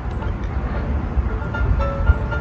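Steady low rumble of wind buffeting the microphone outdoors, with faint background music.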